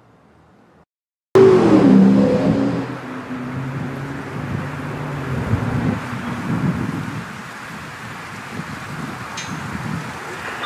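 A motor vehicle driving past close by. It cuts in abruptly about a second in, loudest at first with its engine note falling over the next couple of seconds, then settles into a steadier rumble.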